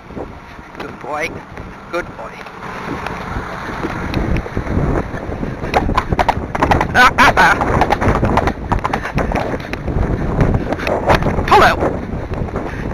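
A John Deere farm tractor passing close by, its engine and tyre noise building over several seconds to a loud peak about six seconds in, mixed with wind buffeting the microphone.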